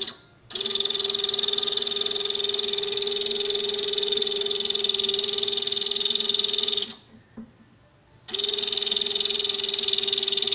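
Tiny electric motor built into a customised, mechanised Hot Wheels toy car, buzzing steadily at one fixed pitch. It runs for about six seconds, stops for about a second and a half, then runs again near the end.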